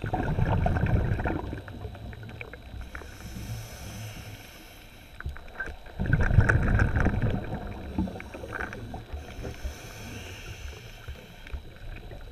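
Muffled underwater sound heard through a camera housing: a diver's exhaled bubbles rumble twice, about six seconds apart, with small clicks and water noise between.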